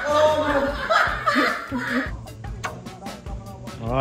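Men laughing and shouting over background music with a steady beat; the voices stop about halfway through and the music carries on.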